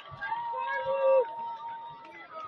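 A cheer squad of young women shouting long, drawn-out calls together, several high voices overlapping, loudest about a second in, over crowd noise.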